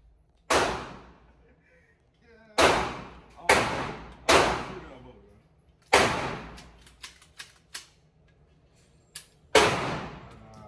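Six gunshots at uneven intervals, each with a long echo off the walls of an indoor range, three of them in quick succession a little under a second apart; a few light clicks come between the last shots.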